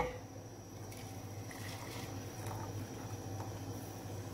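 Hot milk being poured from one small aluminium pan into another holding coffee, a faint pour heard over a steady low hum.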